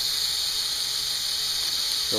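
Lego Technic marble machine running, its motor-driven lift and mechanisms making a steady mechanical whir with a constant hiss.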